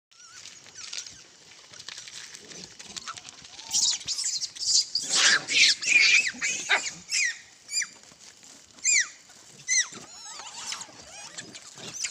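A troop of rhesus macaques calling: a run of harsh screeches about four to six seconds in, then several short, high squeals that fall in pitch.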